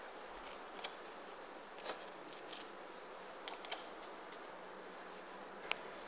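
Faint, scattered light clicks and taps over a steady low hiss, as fried potato slices are laid one by one onto macaroni in a glass tray.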